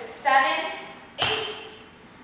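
A woman speaking two short words about a second apart, with a sharp tap at the start of the second.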